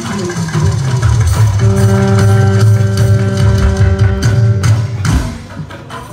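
Live stage band playing a short passage: electric guitar and drums, with a chord held for about three seconds, then the music drops away near the end.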